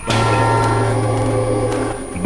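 A loud, steady drone of many held tones over a low hum, cutting in abruptly and holding for about two seconds: an edited sound effect in a TV promo's soundtrack.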